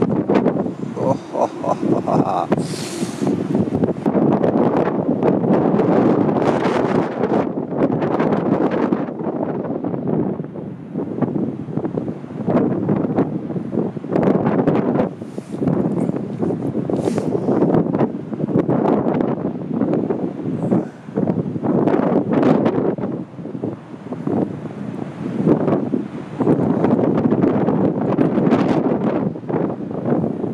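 Heavy storm surf breaking and crashing, the roar surging and easing every few seconds, with strong wind buffeting the microphone.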